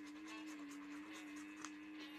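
Faint scratching of a lottery scratch-off ticket, short repeated strokes, over a steady low hum.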